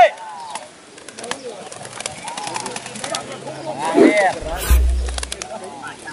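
Short, arched shouted calls from pigeon handlers, loudest about four seconds in, over an outdoor crowd, with scattered sharp clicks throughout. A brief low rumble comes about five seconds in.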